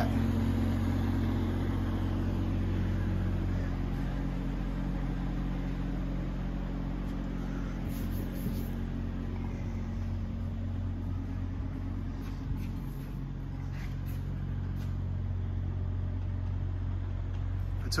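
A steady low-pitched hum from machinery, with a few faint knocks and handling sounds.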